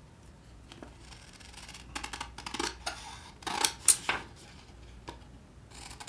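Crisp magazine paper being handled: a cluster of sharp rustles and snips from about two to four seconds in, the loudest near the middle.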